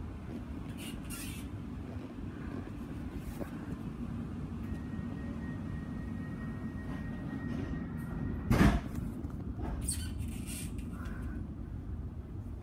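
Steady low rumble inside an electric suburban train carriage, with a faint thin steady tone for a few seconds in the middle. A single loud knock comes about eight and a half seconds in, with a few lighter clicks around it.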